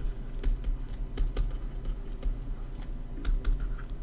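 A stylus pen tapping and scraping on a touchscreen while words are handwritten: a run of light, irregular clicks over a low hum.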